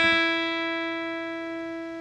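Open high E (first) string of an acoustic guitar, struck with a thumb downstroke, ringing on as one sustained note and slowly fading.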